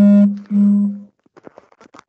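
Microsoft Teams leave-call chime: two short electronic tones, about half a second each, back to back, sounding as the meeting is left.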